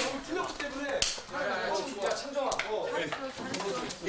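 Indistinct chatter from several voices, with a few sharp smacks scattered through it, the loudest about a second in.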